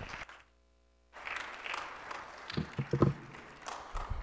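Congregation applauding, starting about a second in after a brief hush, with a few low thumps in the middle of the clapping.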